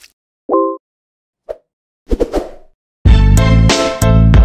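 Intro sound effects for an animated logo: a short pitched pop about half a second in, a smaller blip a second later, and a quick flurry of clicks around two seconds. Then a loud hip-hop beat with heavy bass kicks in about three seconds in.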